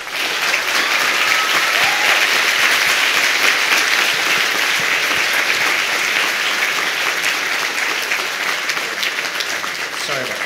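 A large seated audience applauding steadily, starting at once and easing off slightly toward the end.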